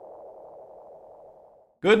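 A soft, hazy mid-pitched tone that slowly fades away over about two seconds. A man's voice starts just at the end.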